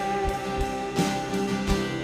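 Live worship band playing a song: acoustic guitar, keyboard and drum kit, with held notes and drum hits.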